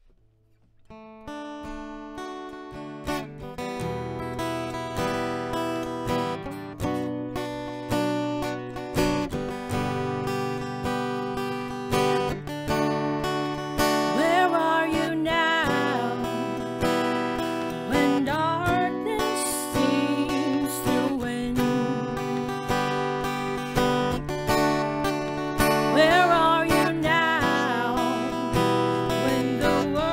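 A strummed acoustic guitar, starting softly and swelling over the first few seconds into steady chords, with a woman's singing voice joining about fourteen seconds in.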